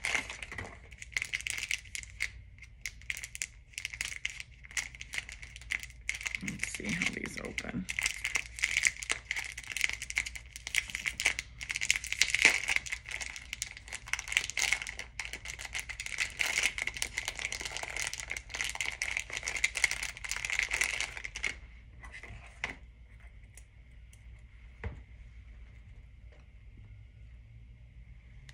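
Plastic packaging crinkling and rustling as a small item is unwrapped by hand, stopping about three-quarters of the way through. Afterwards a faint steady high tone and a single click.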